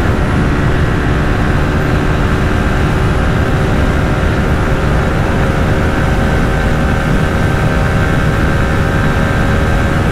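TVS Apache RTR 160 4V's single-cylinder engine held at high revs in top gear, flat out near its top speed of about 115–123 km/h: a steady drone over heavy wind and road rush.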